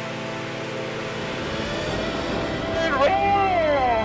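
Steady hiss and hum of the jump's radio and helmet audio feed. Near the end a drawn-out voice call swoops down and then up and down in pitch.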